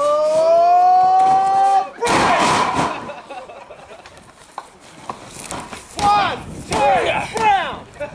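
A long drawn-out yell, then a sudden heavy crash of a body slammed onto the padded ring mat about two seconds in, followed by a few short shouts near the end.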